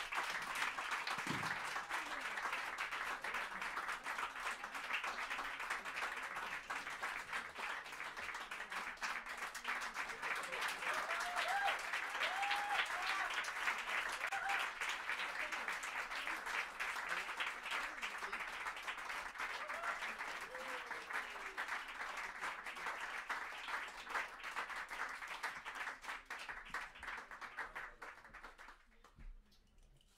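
Audience applauding, with a few cheers about halfway through; the clapping fades away over the last few seconds.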